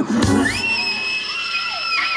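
Live blues-rock band music between sung phrases: a hit at the start, then one high held note that slides up just after the start and sustains for about a second and a half.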